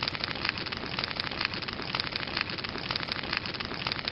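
Steady, dense crackling hiss full of fine clicks.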